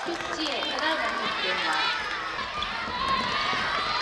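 Several girls' voices shouting and calling out over one another on a futsal court, short overlapping calls throughout.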